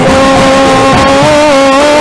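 A male singer holding one long, gently wavering note of a sholawat melody, bending the pitch near the end, over an acoustic patrol-music ensemble of drums and bamboo percussion.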